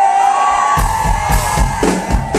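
Live band starting a song: drums and bass come in under the music after about three-quarters of a second, with audience cheering and whoops.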